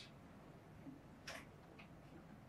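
Near silence: room tone with two faint clicks in the second half, from a laptop's keys or mouse being pressed while a video is being set up.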